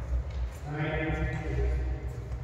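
A man's voice calling out one drawn-out word or exclamation, starting about half a second in and held for a little over a second.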